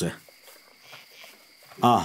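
Faint, steady chirping of crickets in the pause between spoken lines, with a man's voice at the very start and again near the end.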